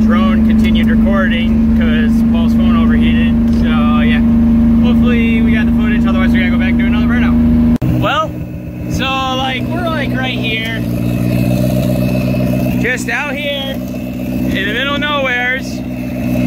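Voices talking over the steady hum of a car engine running. The hum changes suddenly about eight seconds in, from one strong single tone to a lower, rougher set of engine tones.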